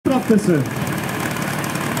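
A short call near the start, then an engine running steadily at idle, most likely the team's portable fire pump engine waiting to be opened up.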